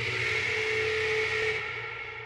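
Intro of a wrestling entrance theme: a synthesized ringing hit that swells in at once, holds a steady high tone over a low hum, then slowly fades away.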